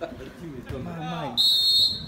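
Referee's whistle: one short, steady, high-pitched blast of about half a second, starting about a second and a half in and cutting off sharply, louder than the men's talk before it.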